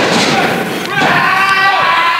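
A wrestler's body hitting the ring mat in a judo-style arm throw: one thud at the very start. Raised voices follow from about a second in.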